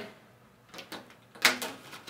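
Overwrap film and a cigarette pack being handled on an overwrapping machine: a few faint clicks and one brief rustle of film about one and a half seconds in as the pack is drawn across the machine.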